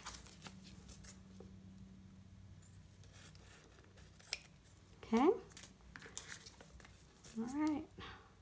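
Scissors snipping through a thin clear plastic sleeve, trimming the excess beside a heat-sealed seam: a run of faint cuts with a sharper snip about four seconds in. Two short sounds from a woman's voice stand out, about five seconds in and near the end.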